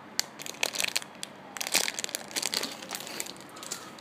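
Clear plastic bag crinkling in irregular crackles as hands squeeze a squishy toy through it. The crackling gets busier about halfway through.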